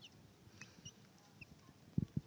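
Young chicks giving a few faint, short, high-pitched peeps, some dropping slightly in pitch, while they dust-bathe in dry dirt.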